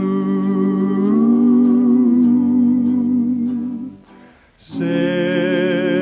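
Western song from an old radio broadcast: singing with guitar accompaniment. A long held note with vibrato closes a phrase, there is a brief pause just past the middle, and then the next phrase starts.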